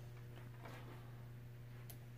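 Quiet steady electrical hum from a powered-on pinball machine, with a single faint click near the end.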